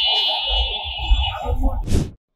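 A steady, high-pitched electronic buzzing tone, alarm-like, over a low rumble, cutting off about a second and a half in. Near the end comes a short sharp whoosh.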